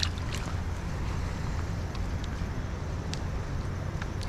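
Steady rushing background noise with a low rumble, with a few faint clicks.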